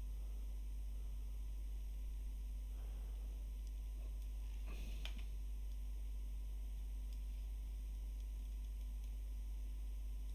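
Steady low electrical hum and hiss of a desk recording setup, with a few faint computer-mouse clicks about three to five seconds in.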